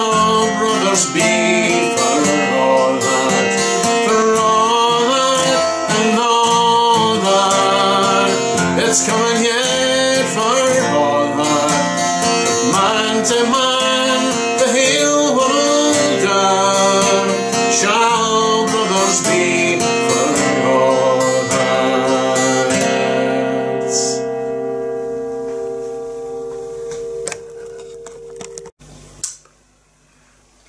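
A man singing to his own steel-string acoustic guitar. The voice stops about 23 seconds in, and the last guitar chord rings on and fades away over the next few seconds.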